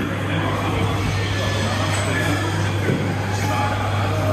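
Busy roadside eatery ambience: background chatter over a constant low hum and traffic-like noise, with a short laugh at the start.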